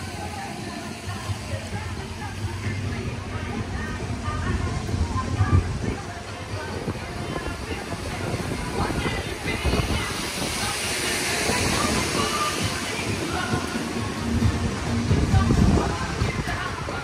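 Music playing with people's voices over it on a spinning amusement ride, with wind buffeting the microphone as the ride moves. A hiss of rushing air swells about ten seconds in.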